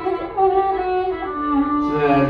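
Carnatic violin playing a slow melodic phrase with sliding, held notes in raga Sankarabharanam, answering the male vocal line that comes before and after it.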